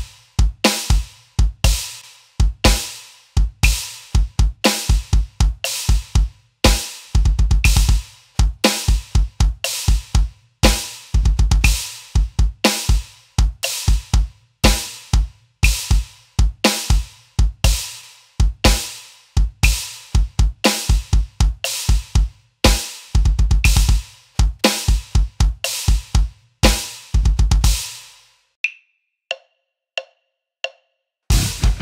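Electronic drum kit playing a slow, 60 bpm double-bass metal groove: cymbal, snare and kick hits in a steady pattern, broken by short rapid runs on the double bass drum pedals. The playing stops about two seconds before the end, leaving a few faint ticks.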